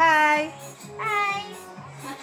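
A child's high voice giving two short notes, each about half a second, one at the start and one about a second in, much louder than the background music with a steady beat that runs underneath.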